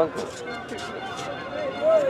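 Men's voices on the sideline of a football pitch, talking and calling out over background chatter, with one louder call near the end.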